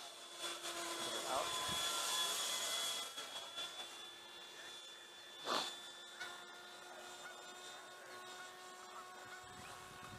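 Electric ducted-fan motor of a radio-controlled Hobby King Sky Sword model jet flying past at a distance: a steady high whine with a hissing swell that builds about a second in and fades after three seconds.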